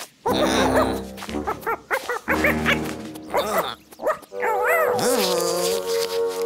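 Cheerful background music with cartoon characters chattering in wordless, squeaky vocal sounds that rise and fall in pitch.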